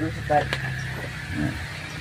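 Two brief spoken words from a man, over a low steady hum that fades after about a second.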